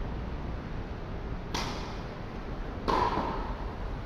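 Two tennis balls struck by rackets, sharp pops just over a second apart, the second the louder, over a steady low background noise.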